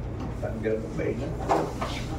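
People talking, with a short hard knock about one and a half seconds in, typical of pool balls being handled and gathered for the next rack.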